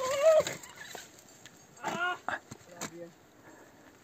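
A climber's loud wordless yells during a fall on a winter climbing route. The first is a loud rising yell right at the start, and a second, shorter call comes about two seconds later, with a few faint knocks in between.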